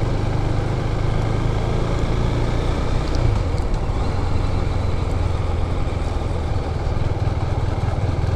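2018 Husqvarna 401 Svartpilen's single-cylinder engine running steadily while the bike rides along at low speed.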